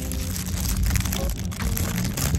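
Plastic candy wrapper crinkling as fingers work it open, over a steady low rumble.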